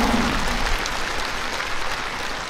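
Large audience applauding, the clapping slowly dying down toward the end.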